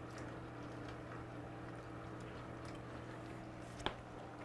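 Faint steady water-movement and pump noise of a running reef aquarium, with a low steady hum. A single short click sounds just before the end.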